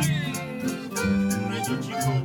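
A small live band of acoustic guitars and a button accordion playing an instrumental passage of a Mexican song, over a steady strummed rhythm. The accordion carries the melody.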